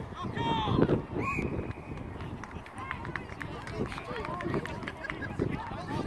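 Shouting from players and spectators at a rugby match, loudest in the first second, with a short steady whistle blast just after.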